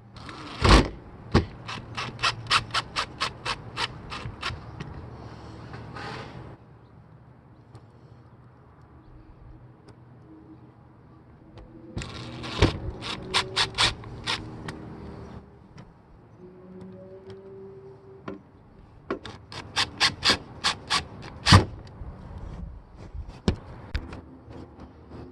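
Cordless drill/driver driving screws to fasten a roof fan to a van roof, in three bursts, each a run of sharp clicks about four a second.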